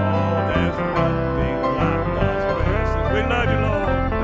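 A gospel song played live: a man sings with an acoustic guitar accompanying him, in a steady country-style arrangement.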